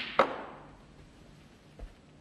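Snooker balls: a sharp click of the cue ball striking an object ball just after the start, dying away over about half a second, then a soft low thud near the end as the potted ball drops into the pocket.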